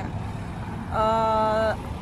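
A woman's voice holding a single steady hesitation sound, an 'uhh' lasting under a second, about a second in. A constant low rumble runs underneath.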